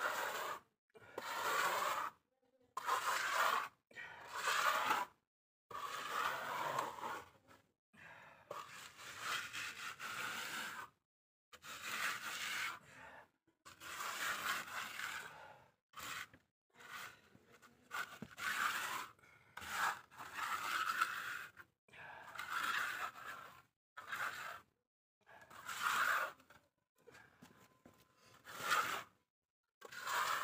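Steel plastering trowel scraping plaster onto a wall in repeated strokes, each about one to two seconds long with short pauses between.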